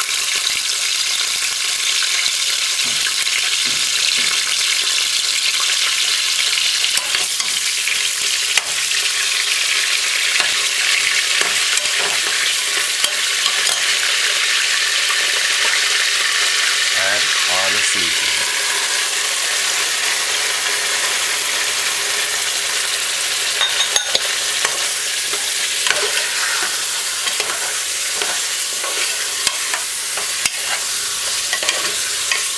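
Oxtail pieces sizzling steadily in hot oil in an aluminium pressure-cooker pot, with the occasional click of a metal spoon against the pot as they are stirred.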